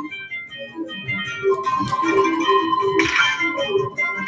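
Dragon Link Panda Magic slot machine playing its electronic organ-like jingle of short chiming notes during the Hold & Spin feature, with a held tone coming in about one and a half seconds in and a brief whoosh about three seconds in.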